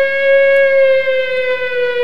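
PicoScope software's siren alarm sounding, set off by a mask failure: the captured waveform has gone outside the mask limits. One long held siren tone, sinking slowly in pitch.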